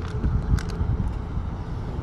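Steady low outdoor rumble with a few sharp clicks near the start and about half a second in.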